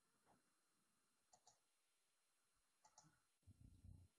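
Near silence with two pairs of faint clicks about a second and a half apart, and a faint low rumble near the end.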